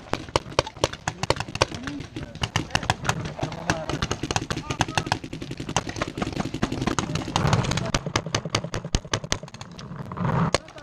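Paintball markers firing in rapid, irregular volleys, several sharp shots a second throughout, from more than one player.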